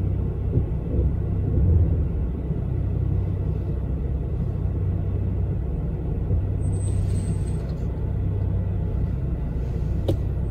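Steady low rumble inside a car cabin while the car waits in traffic: engine idling and surrounding traffic noise. A brief faint high tone sounds about seven seconds in.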